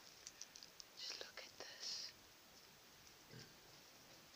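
Whispered speech in short hissy bursts for about two seconds, then near silence with one brief faint low sound a little after three seconds in.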